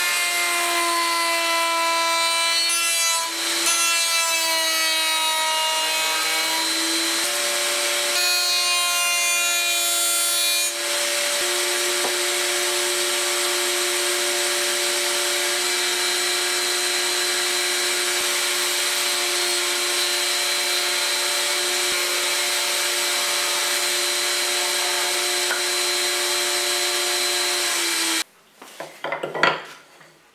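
Router spinning a bearing-guided pattern bit in a router table. Its high whine wavers and dips in pitch over the first several seconds while the bit cuts the hardwood workpiece, then holds steady. It stops suddenly near the end, followed by a few light knocks of wood.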